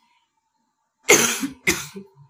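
A person coughing twice in quick succession, the first cough louder, after about a second of silence.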